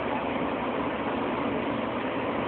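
Steady background hum with no distinct events.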